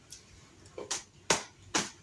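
Three short, sharp clicks about half a second apart, starting near the middle.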